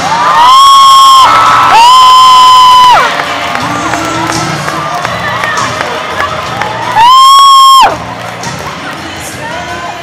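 Theatre audience cheering, with three long, shrill, held cries from someone close to the microphone, each about a second long and much louder than the rest: two early on in quick succession and one about seven seconds in. Crowd noise and music continue underneath.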